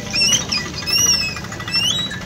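A bird giving four short whistled chirps: the first and last rise in pitch, and a longer arching note comes about a second in. A steady low rumble runs underneath.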